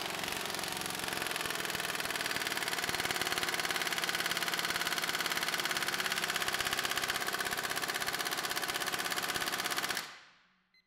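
Impact wrench hammering continuously through a shallow 19 mm impact socket on a torque dyno, a rapid, even rattle of blows. It grows slightly louder over the first few seconds as the bolt loads up toward about 420 ft-lb, then stops right at the end.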